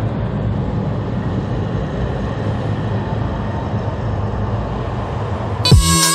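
Tram running: a steady low rumble with a rushing noise, ending as music comes back in near the end.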